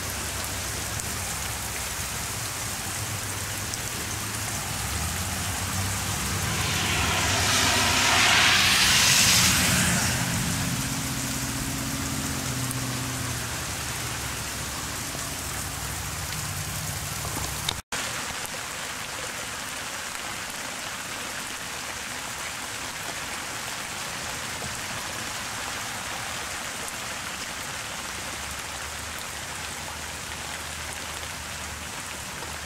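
Steady rain falling on the street, lawn and porch roof. About six seconds in, a car passes on the wet road: a rising then fading tyre hiss over a low engine hum, loudest around nine seconds. The sound cuts out for an instant about eighteen seconds in.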